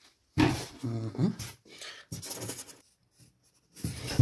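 A man's voice saying a few low, indistinct words in two short stretches, with a pause between them.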